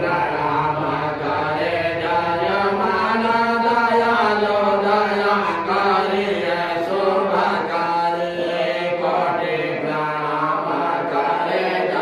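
A Hindu priest chanting Sanskrit puja mantras into a microphone in a continuous, melodic recitation.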